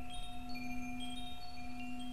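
Wind chimes ringing with scattered, short high notes over a steady low drone.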